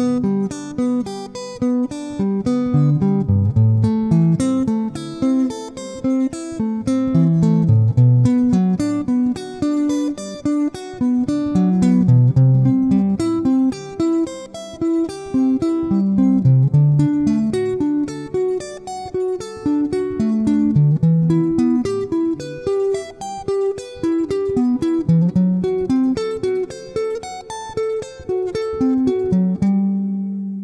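Stratocaster-style electric guitar playing an even stream of picked single-note arpeggios with string skipping, climbing through the harmonised chords of the G major scale (G, Am, Bm up to D, Em, F♯ half-diminished). Near the end it settles on one held note that rings out.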